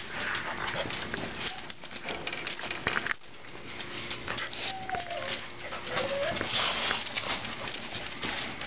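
Dogs' claws clicking and pattering on a tile floor as they walk close around a person's feet, with footsteps and shuffling. Two short whimpers come about halfway through.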